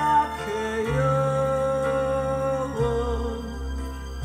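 A 1980s Korean pop ballad playing from a vinyl LP on a turntable, with a long held melody note over steady accompaniment from about a second in and a change near the end.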